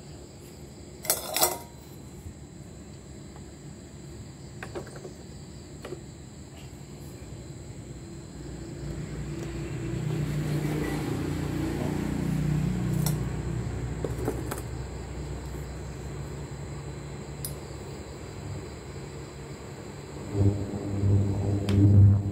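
Short electronic beep from an induction cooktop's control panel as its buttons are pressed, then a low steady hum with a few light metallic clinks of a steel saucepan being set on the cooktop as it starts heating.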